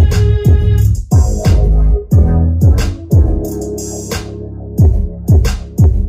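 Electronic music with deep bass-drum hits that drop in pitch, played through the Corzus Z500 mini amp into a small subwoofer and speakers as a listening test of the amp.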